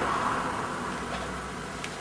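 Steady background hiss and low hum of a small room (room tone) in a pause between a man's sentences, with a faint click near the end.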